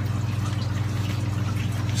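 Steady low hum of reef-aquarium equipment, with water running through the tank plumbing.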